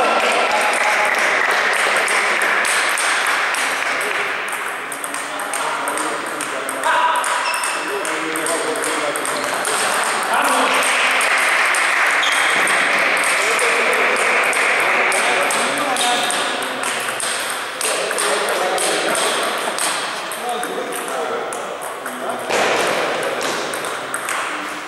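Table tennis ball struck back and forth with rubber-faced paddles and bouncing on the table during a doubles rally, a quick run of sharp clicks, with voices in the background.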